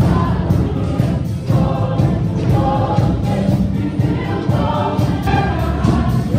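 Show choir singing with live band accompaniment: many voices in chorus over a heavy bass, loud and continuous.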